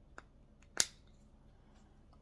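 Two small plastic model-kit parts pressed together by hand: a faint click, then a sharp snap a little under a second in as they fit home.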